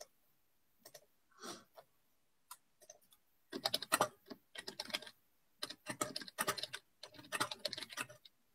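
Typing on a computer keyboard: a few scattered key clicks, then runs of rapid keystrokes from about halfway through.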